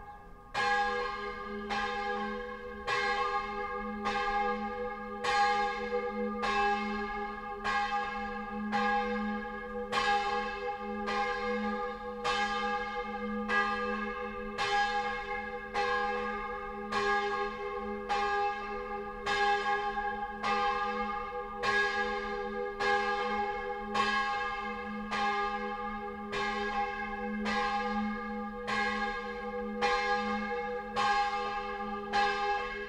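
A single bronze church bell, bell 4 of a six-bell peal, swinging and rung alone: its clapper strikes in an even rhythm a little over once a second, each stroke ringing on into the next. The strokes begin right at the start.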